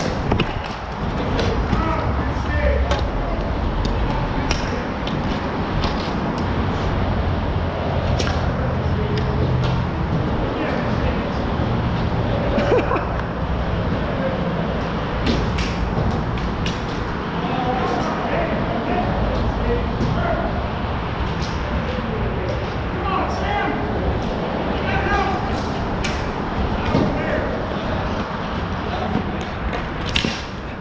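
Street hockey play: sticks clack against the orange plastic ball and the plastic sport-tile floor in scattered sharp clicks, with players calling out now and then, mostly in the second half. A steady low rumble runs underneath.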